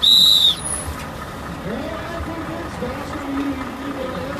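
A loud, high-pitched whistle blast lasting about half a second at the start, dipping slightly in pitch as it ends, followed by quieter background voices.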